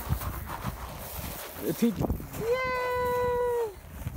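A person's drawn-out vocal call held on one steady pitch for about a second, after a couple of short voice sounds.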